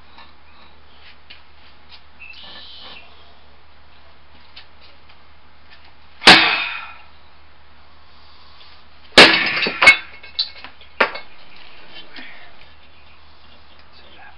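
Two hard hand strikes on a piece of concrete patio slab, about three seconds apart. The second is followed by a quick run of cracks and clatters as the slab breaks and its pieces drop.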